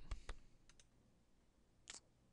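A few faint clicks from someone working a computer: a cluster in the first second and a louder one near the end, with near silence between.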